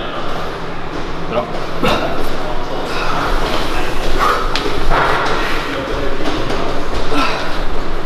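One heavy thud about two seconds in, the weight plates of a plate-loaded gym machine being set down at the end of a set, with voices talking around it.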